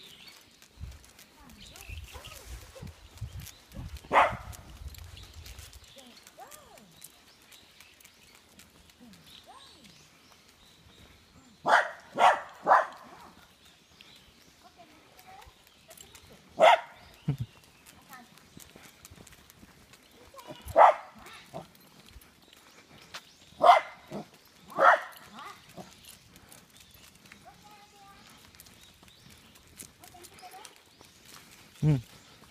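A dog barking in short single barks spaced out over several seconds, with a quick run of three barks near the middle. Footsteps on a paved path are underneath.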